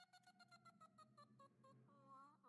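Comic sound effect: a single tone sliding slowly downward over a fast, even clicking.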